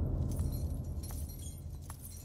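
Bangles on a woman's wrists jingling and clinking, with a few sharp clinks among the jingle, over the fading low rumble of the soundtrack's last hit.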